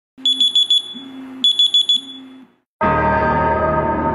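Electronic alarm beeping in two quick runs of high beeps about a second apart, then a sudden deep gong-like hit just before three seconds in that rings on with a dense, sustained tone.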